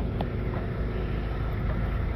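Steady low rumble of outdoor street noise, with wind buffeting the microphone and a faint tick shortly after the start.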